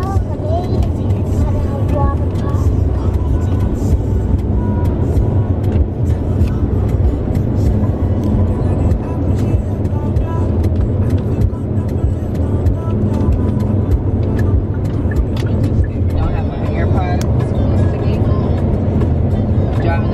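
Steady low road and engine rumble inside a car's cabin at highway speed.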